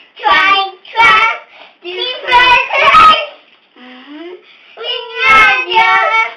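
Two young children singing together without accompaniment, in short phrases with brief breaks between them, softer for a moment past the middle.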